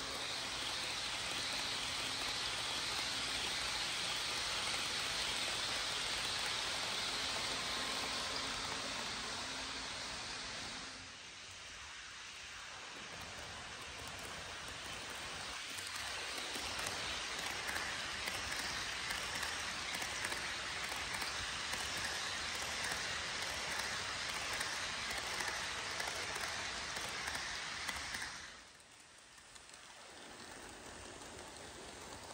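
HO scale model trains rolling past on the track: a steady hiss of small metal wheels on rails, with a faint low hum in the first part. First an Amtrak passenger train, then, after a brief drop about eleven seconds in, a long reefer freight led by a single diesel; the sound drops again near the end.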